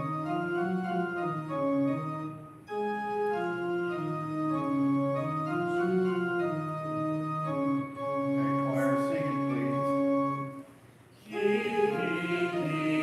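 Church organ playing a psalm refrain melody in sustained chords, phrase by phrase, introducing the tune for the choir and congregation to sing. There are short breaks between phrases about two and a half and eight seconds in, and it stops briefly about eleven seconds in.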